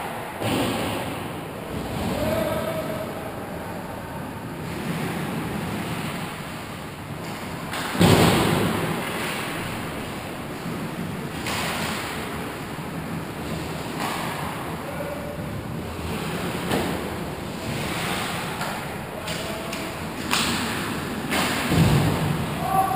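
Ice hockey play in an echoing indoor rink: skates scraping the ice under a steady arena hum, with sudden stick-and-puck knocks that ring out. The loudest knock comes about eight seconds in, and another comes near the end.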